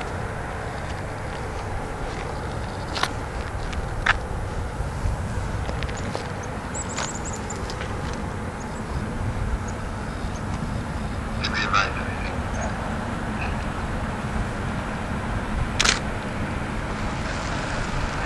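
Steady low rumble of road ambience as a police cruiser rolls slowly toward the microphone ahead of the lead runners. A few sharp clicks and brief high chirps sound over it.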